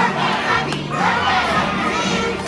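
A crowd of children shouting together, many voices at once.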